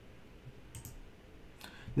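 A few faint computer mouse clicks: a quick pair a little under a second in and one more near the end, over a quiet room.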